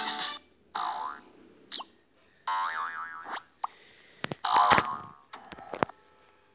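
Cartoon sound effects: a music cue cuts off just after the start, followed by a string of short boings and swooping sounds, a wobbling warble about halfway, and a loud burst with sharp clicks near the end.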